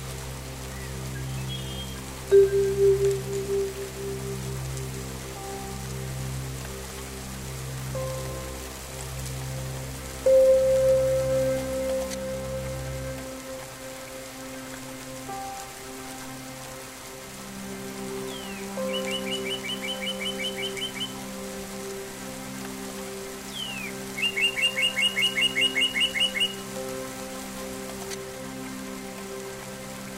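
Ambient meditation music: a sustained synthesizer drone with soft struck bell tones, laid over a steady rain recording. The low drone drops away about halfway through, and a bird's rapid trill of repeated chirps comes twice in the second half, each lasting about two seconds.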